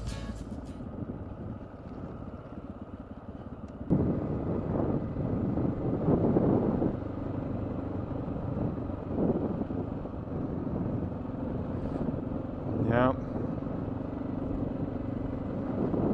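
Honda XR650L's single-cylinder four-stroke engine running under way on a gravel road, with wind and road noise on a helmet-mounted camera. It gets louder about four seconds in, and a brief wavering pitched sound comes in near the end.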